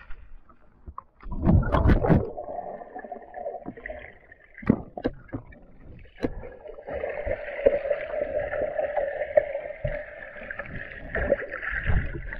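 Water sloshing and gurgling heard through an action camera's microphone submerged without a case, sounding muffled. There is a loud rush about a second in, a few sharp knocks, and a steady muffled drone through the second half.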